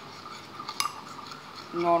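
Metal spoon scraping and clinking against a ceramic bowl while stirring a thick paste of fuller's earth (multani mitti), with one sharper clink a little under a second in.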